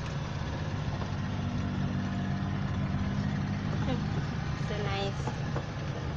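Car engine running at low speed with road noise, heard from inside the cabin on a slow dirt-road drive: a steady low hum that rises a little in pitch partway through.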